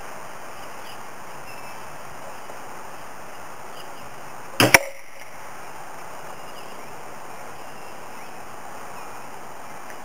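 A 175 lb Jaguar crossbow shot followed a split second later by its 16-inch aluminium bolt striking the plywood board with a sharp crack, two quick hits about halfway through. A steady hiss of outdoor background noise runs underneath.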